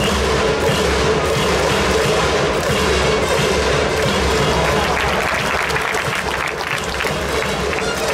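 Baseball stadium crowd cheering steadily: an organised cheering section chanting to trumpets and drums.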